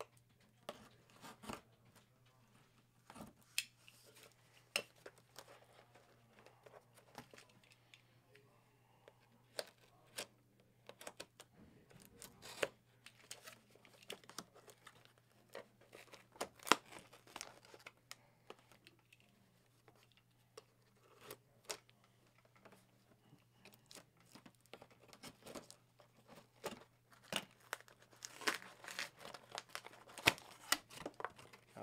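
Packing tape on a cardboard box being pierced and torn open with a pen: irregular scratching, tearing and crinkling with short sharp clicks, busiest near the end, over a faint steady low hum.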